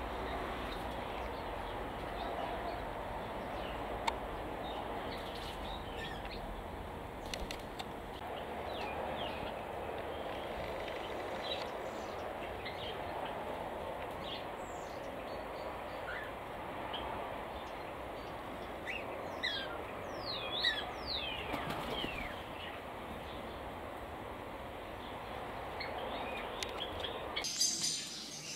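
Small aviary birds giving scattered short, high chirps over a steady outdoor background hiss, busiest about two-thirds of the way through.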